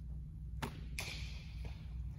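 Softball from an easy windmill pitch landing in a catcher's glove: a short knock about half a second in, then a sharp smack about a second in with a brief echo off the walls.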